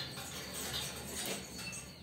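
Rustling and light scraping of a potted orchid and its wire hanger being handled and taken down.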